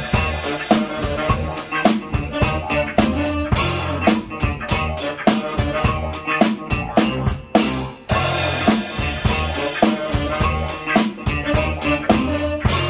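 Acoustic drum kit played in a steady groove, with snare and bass drum strikes several times a second, over a backing track with pitched bass and other instruments. There is a short break in the pattern a little after halfway.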